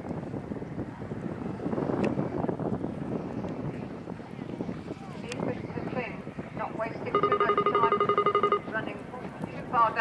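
Indistinct voices with wind on the microphone. About seven seconds in, a steady pitched electronic-sounding tone sounds for about a second and a half and is the loudest sound.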